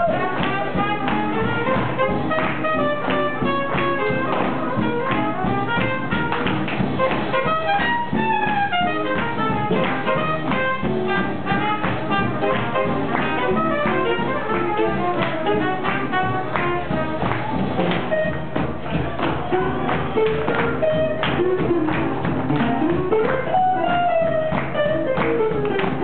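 A live big band playing up-tempo swing jazz, horns over upright bass, guitar and drums with a steady beat; a horn line slides in pitch near the end.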